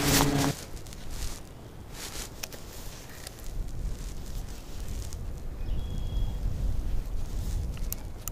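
A motorboat engine humming steadily, cut off sharply about half a second in. After that there is only a low, steady rumble with faint rustling.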